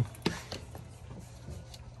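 Wire cutters snipping thin wire: one sharp click about a quarter second in, then a few fainter ticks.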